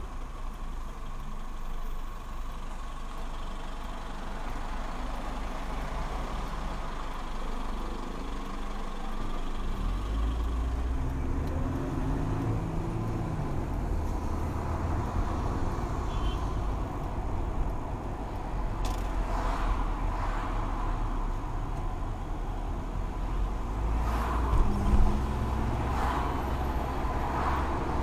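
Mercedes-Benz car's engine and road noise heard from inside the cabin as it pulls away and speeds up in city traffic. The low rumble grows louder about ten seconds in. A few short knocks come in the last ten seconds.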